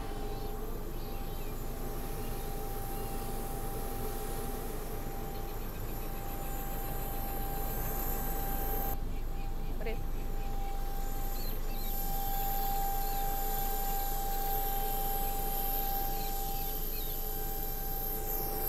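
Steady drone of airport apron machinery with a constant mid-pitched whine, from a parked airliner's running APU and a refuelling truck alongside. The sound shifts slightly about halfway through.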